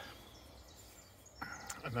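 Faint, steady outdoor background hiss with no distinct sound event, until a man's voice starts near the end.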